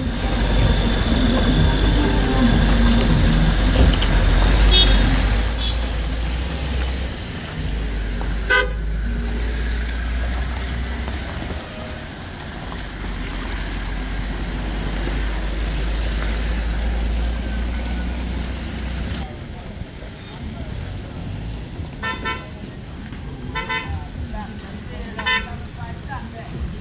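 Cars passing slowly along a wet, potholed gravel road, engines running and tyres on the muddy surface, with a short car horn toot about eight seconds in.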